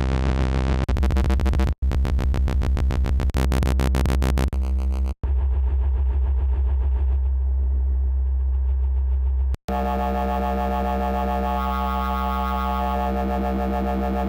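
Xfer Serum software synthesizer holding a low drum-and-bass bass note, its oscillator B wavetable position swept by an LFO so the tone pulses and shifts. It cuts out briefly three times as different wavetables are tried, changing character after each: fast pulsing at first, then smoother and duller, then a steady, bright, buzzy tone.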